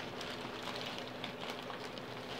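Faint rustling and light ticking of items being rummaged through, over a steady low hum.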